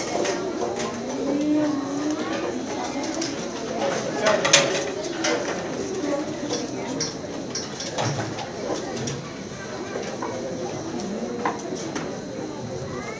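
Indistinct murmur of audience and children's voices in a school hall, with a few scattered knocks and bumps.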